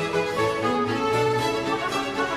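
Instrumental background music: held, pitched notes at an even loudness, changing from one note to the next.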